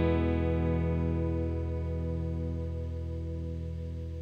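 The song's final chord ringing out on electric guitar with a slow pulsing waver, fading away steadily.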